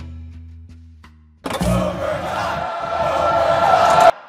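Background music with sustained low bass notes fading out, then about a second and a half in a sudden loud rushing sound effect that builds slightly and cuts off abruptly at the end: a logo sting.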